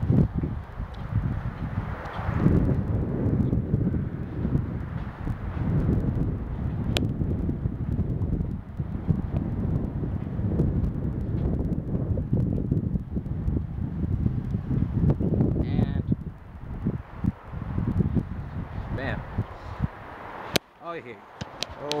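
Strong gusting wind buffeting the camera's microphone: a low, uneven rumble that swells and drops with each gust, in gusts of about 40 mph.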